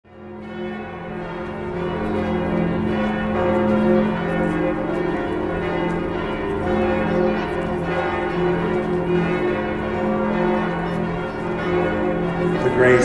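Church bells ringing, several bells overlapping in a continuous peal with a long, wavering hum; it fades in over the first couple of seconds.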